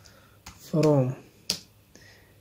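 A few sharp computer keyboard key clicks as a word is typed, the loudest about one and a half seconds in.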